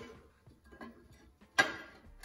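A steel fish plate being handled against a steel truck frame rail: a few faint light taps, then one louder metallic knock and scrape about a second and a half in as the plate is pressed into place.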